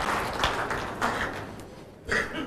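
Audience applause fading away.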